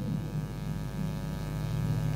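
Steady electrical hum and buzz from a microphone and amplifier sound system, with no one speaking.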